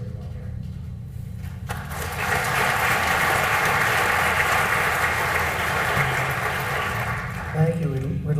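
A large theater audience applauding: the clapping starts about two seconds in, holds steady, and dies away near the end as a man starts speaking over the PA.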